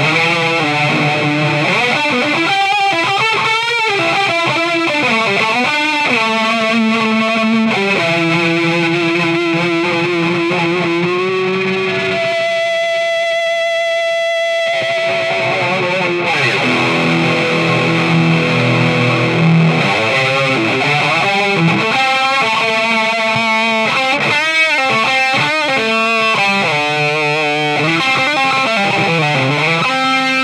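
Electric guitar played through an E-Wave DG50RH all-tube amplifier head on its distorted drive channel: a single-note lead line with bends and vibrato, and one long held note about twelve to fifteen seconds in.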